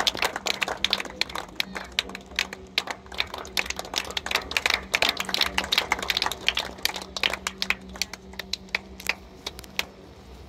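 A small crowd clapping by hand, uneven claps that thin out near the end.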